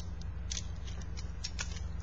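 Scattered light clicks and clinks of a gold spiked bracelet being handled and slipped onto a wrist, over a steady low hum.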